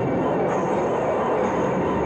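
Loud, steady rushing noise: a strong-wind sound effect.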